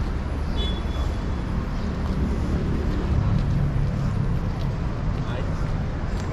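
City-centre street ambience: a steady low rumble of traffic with people's voices in the background, and a brief high-pitched tone about a second in.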